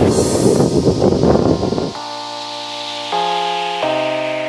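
Wind buffeting the microphone, then about halfway through it gives way to music: sustained keyboard chords that change every second or so.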